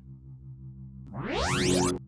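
Cartoon sound effect: a rising electronic sweep starts about halfway through, grows louder and cuts off sharply. Under it runs a low steady background drone.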